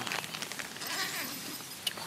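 Soft rustling of nylon tent fabric being handled, with a brief faint voice sound about a second in and one sharp click near the end.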